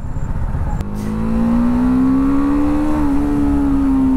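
BMW G 310 R's single-cylinder engine on its stock exhaust, pulling under acceleration: from about a second in the engine note climbs steadily for about two seconds, then holds, over road and wind noise.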